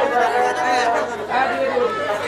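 Speech: voices talking, with chatter from a crowd behind.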